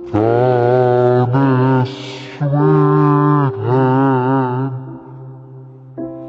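A man singing slow, long-held notes with vibrato: four notes of about a second each, with a short breathy hiss between the second and third.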